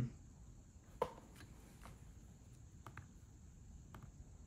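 A few light clicks and taps from clicking a MacBook Air's trackpad and handling a small USB ethernet adapter. The loudest is a single sharp click about a second in.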